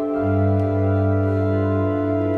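Organ playing a slow improvised accompaniment: sustained chords, with a new low bass note coming in just after the start and holding.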